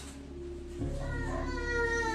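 A baby's high-pitched vocalising: drawn-out calls that start just under a second in and slide down in pitch, over a low steady hum.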